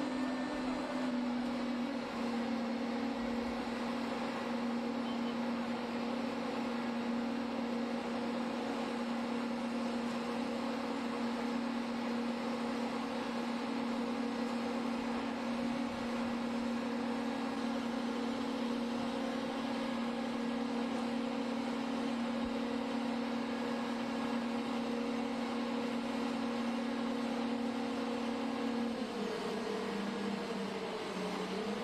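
Engine of a grouting rig running steadily under load as it pumps cement slurry through a hose, its pitch dropping noticeably near the end.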